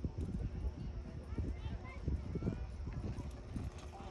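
Horse galloping on arena dirt at the start of a barrel-racing run, with a quick, irregular drumming of hoofbeats. Voices talk faintly in the background.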